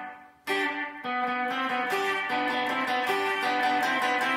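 Gretsch hollow-body electric guitar playing rock and roll double stops, quickly repeated triplets on the top two strings in G, starting about half a second in after a short pause.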